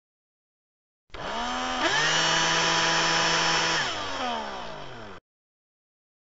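A motor starts about a second in and its pitch rises quickly. It runs steadily at high speed for about two seconds, then winds down with falling pitch and cuts off suddenly.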